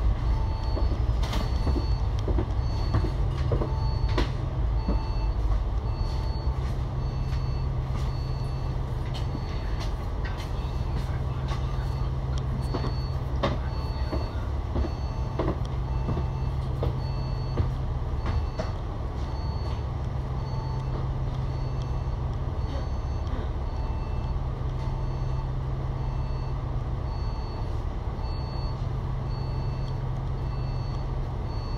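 Diesel engine of an Alexander Dennis Enviro500 MMC double-decker bus idling at a standstill, a steady low rumble. Over it, a short electronic beep repeats about every three-quarters of a second.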